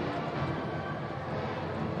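Steady background sound of a stadium crowd, with faint music underneath.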